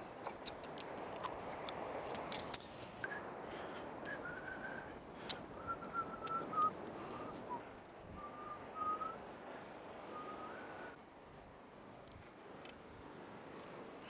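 Faint whistling: a string of short, level notes, a simple tune, from about three seconds in until about eleven, over a steady hiss, with a few scattered clicks.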